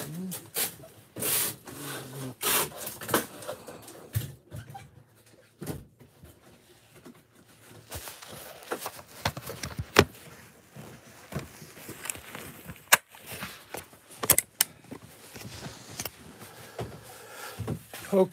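Handling noise from a phone's microphone: irregular rubbing, scraping and clicks as the phone is moved about and brushes against shirt fabric, with a couple of sharper knocks past the middle.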